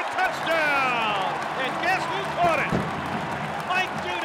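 A radio play-by-play announcer's excited call of a touchdown, with a long drawn-out shout falling in pitch about half a second in, over steady crowd noise.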